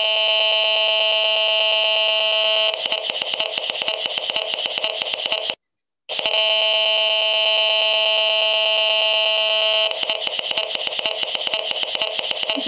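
Audio output of an HF 35C RF meter turning a cell phone's radio emissions into sound: a loud, high-pitched whining buzz that breaks into fast, irregular rat-tat clicking. It cuts out briefly in the middle, then the whine and rat-tat come again.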